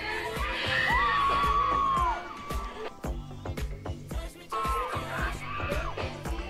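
Live pop music with a steady drum beat and a singer's held high notes, twice, with a crowd cheering.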